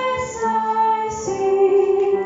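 A woman singing a slow hymn into a microphone, accompanied by violin, holding long notes with a change of pitch just past the middle.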